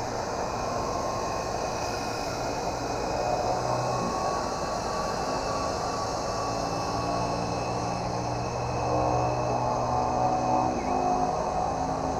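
Fastlane Jawbreaker 3.5-channel RC helicopter's electric motors and rotors whirring steadily as it lifts off and climbs, the pitch shifting a few times with the throttle.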